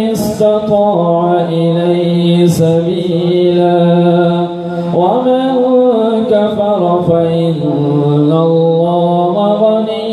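A man reciting the Quran in Arabic in a slow, melodic chant (tilawat), holding long notes that rise and fall, with a short breath pause about halfway through.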